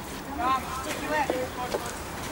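Short distant shouts of players calling to each other on a football pitch, a couple of brief calls, over a low rumble of wind on the microphone.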